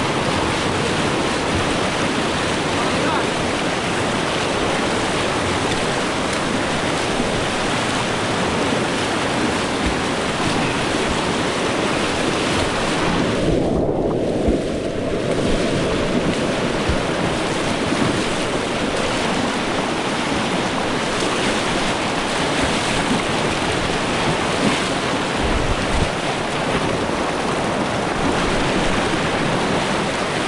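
Fast, muddy river rapids rushing loudly and steadily, white water churning around rocks and people wading through it. The sound goes briefly muffled for about a second around the middle.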